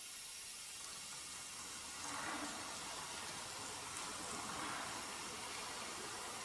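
Faint steady hiss with no distinct events, getting slightly louder about two seconds in.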